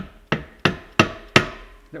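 A mallet tapping the casing of a Fristam FPE centrifugal pump, five sharp strikes at about three a second, each ringing briefly. The taps crack the casing loose from the bell housing after its clamp has been slackened.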